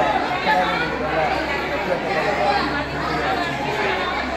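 A man speaking into a handheld microphone, with chatter from people around him.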